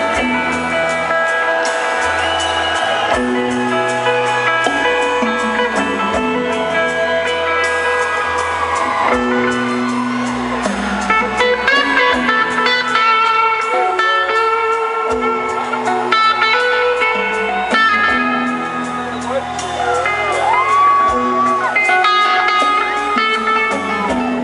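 Live rock band playing in an arena, electric guitars holding long notes and bending them over a bass line, with no singing.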